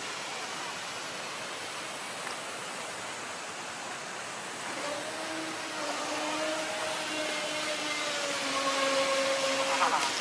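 Steady rush of fountain water, then about five seconds in the motor of a radio-controlled model speedboat starts up with a steady whine that grows louder as the boat runs across the pool.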